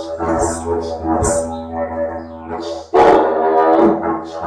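Didgeridoo playing a steady low drone, pulsed by brighter accents about once a second. About three seconds in it breaks into a sudden louder, fuller blast.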